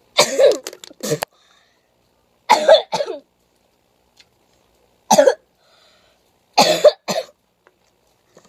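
A girl coughing in four loud bouts of two or three coughs each, about every two seconds, from a spoonful of dry ground cinnamon caught in her throat.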